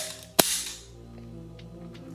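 SCCY CPX-1 9mm pistol dry-fired: a single sharp click of the trigger releasing the hammer, a little under half a second in, over faint background music.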